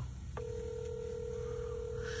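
Telephone ringback tone, heard through the phone: one steady ring of about two seconds, starting about a third of a second in. It means the outgoing call is ringing at the other end. A low steady hum runs underneath.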